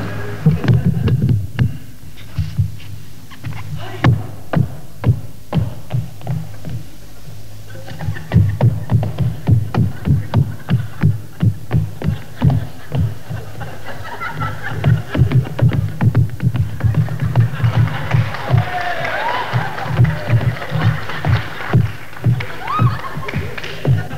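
Up-tempo live music with a quick, steady beat and a pulsing bass line, played as a stage entrance; voices from the audience rise over it in the second half.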